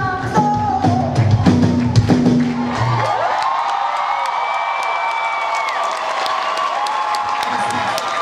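Live band with bass and horns playing the last bars of a song. About three seconds in, the music stops and the concert crowd cheers.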